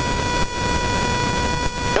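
Steady cockpit noise of a light aircraft in flight, engine and airflow, with a constant whine made of several steady pitches over it.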